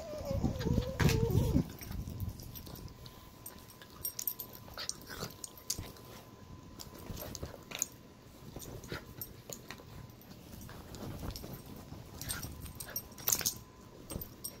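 A small dog whining in the first second or so, then scattered rustling and scratching as it moves about on a blanket.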